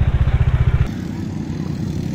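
Motorcycle engine idling with an even low pulse, cut off abruptly just under a second in, then a quieter steady low outdoor rumble.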